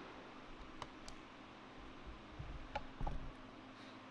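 Handling noise from a camera being picked up and carried: a few sharp clicks and low thumps, with more of them close together near the end, over a steady low hum.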